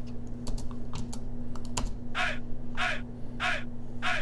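Mouse and keyboard clicks, then from about halfway a sampled 'hey' vocal chant playing back from the FL Studio step sequencer: three short, falling shouts, evenly spaced about a beat apart at 96 BPM.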